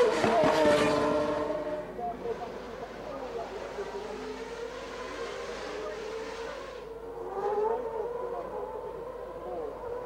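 A1GP race car's Zytek V8 engine passing close by and fading away in the first two seconds, followed by a quieter steady drone of race engines at a distance, with another car's engine rising and falling about seven to eight seconds in.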